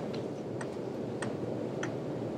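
Faint, evenly spaced clicks, about one every half-second or so, over a steady low room hum.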